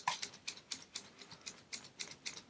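A sheet of paper waved quickly as a hand fan in front of the face, giving soft, rapid swishes at about five strokes a second.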